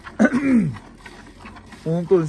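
A cow being milked by hand into a metal pail partly full of milk: quiet, rhythmic squirts of milk. Near the start, a short call slides sharply down in pitch.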